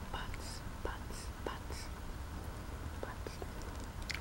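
Close-up soft mouth sounds with breathy whispering: several brief hissy breaths or whispered sounds and a few small sharp wet clicks.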